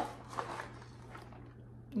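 Faint handling sounds as a cardboard box of rotini pasta is picked up, over a steady low hum.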